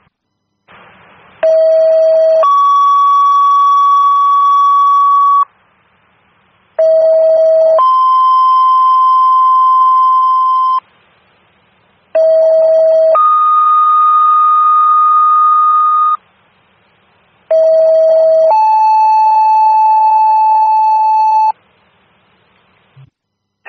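Fire dispatch two-tone paging tones over a scanner radio: four sequences in a row, each a short lower tone of about a second jumping straight into a longer, higher tone of about three seconds. The first tone is the same pitch each time and the second changes from one sequence to the next, alerting each company in turn to a call.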